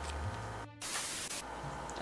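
Low steady hum with a brief dropout a little past half a second in, then about half a second of static-like hiss that stops abruptly.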